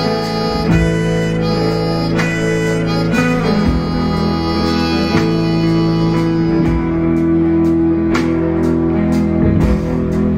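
A live band playing an instrumental passage: electric guitars, bass guitar and drums, with long held notes, and the drum and cymbal strokes coming through more clearly in the second half.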